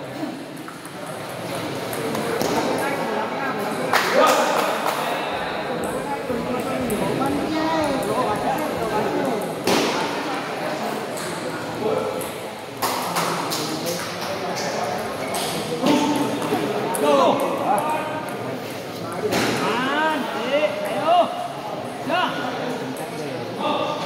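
Table tennis balls clicking off paddles and tables during doubles rallies, with sharp knocks every few seconds, over people talking in the hall.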